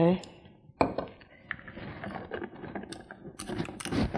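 Plastic handling noise as a lid is fitted onto a small portable blender cup: a single knock about a second in, then light clicks and rubbing that grow busier near the end.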